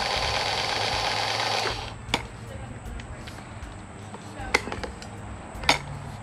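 Ryobi One+ P310G cordless caulk gun's electric motor whirring steadily as it drives the plunger rod, stopping a little under two seconds in. After it come a few light clicks of the gun being handled.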